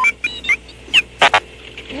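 R2-D2's electronic beeps and chirps: a few short high whistles, a quick pitch glide, then a brief buzzy burst about a second and a quarter in. It is the droid's own beep-language way of saying 'banana'.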